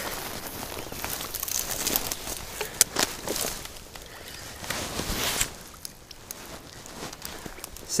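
Rustling and scuffing handling noise: clothing rubbing against a chest-mounted camera and movement through dry bank grass, with scattered sharp clicks and a brief louder rustle about five seconds in.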